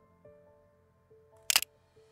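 Sony ZV-E10 camera's shutter firing once, a sharp double click about one and a half seconds in, over quiet background music.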